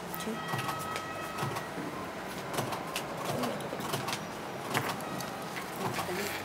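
Papers being handled and leafed through on a conference table: many soft rustles and light clicks throughout. A faint steady high tone sounds for about the first two seconds.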